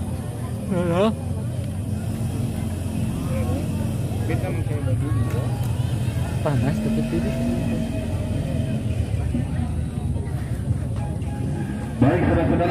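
Spectators' chatter with a few scattered calls, over a steady low rumble.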